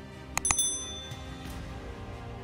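Subscribe-button sound effect: two quick mouse clicks about half a second in, then a bright bell ding that rings out and fades within about a second, over soft background music.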